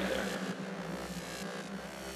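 Ambient electronic music: a sustained low drone with a faint hiss above it, slowly fading.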